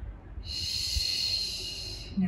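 A woman's long audible exhale, a hissing breath out that starts about half a second in and lasts about a second and a half: Pilates breathing timed to the exercise.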